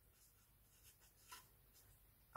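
Near silence with faint strokes of a marker pen writing a number on a white surface, a few soft marks from about a second in.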